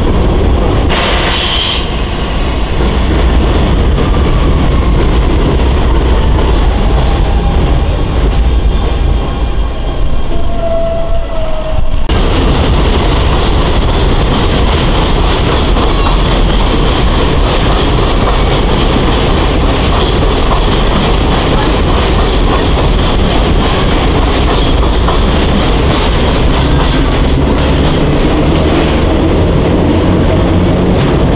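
Vintage BMT BU wooden gate car train moving along elevated track, a steady noise of its wheels running on the rails. A brief loud hiss comes about a second in, and the sound changes abruptly about twelve seconds in.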